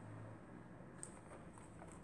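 Near silence: faint room tone, with a single soft click about a second in.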